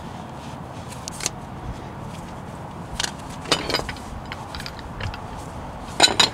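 A handful of brief scrapes and clicks from tools being handled by someone lying under a van, over a steady low background hiss.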